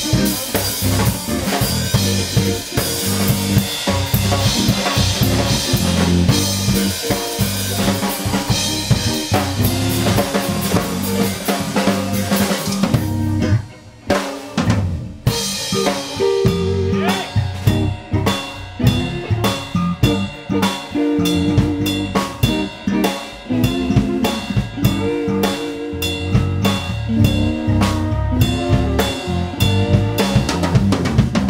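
A live band playing: a TAMA drum kit with bass drum, snare and cymbals, electric bass, electric guitar and French horn. The band drops out briefly about halfway through, then comes back with held notes over lighter drumming.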